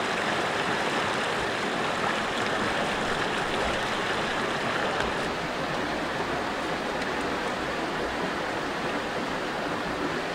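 Shallow river running fast over rocks in riffles, a steady rushing noise.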